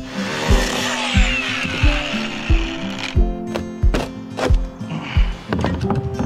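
A cordless angle grinder with a cut-off disc cuts through fibreglass deck for about three seconds, then stops, over background music with a steady beat.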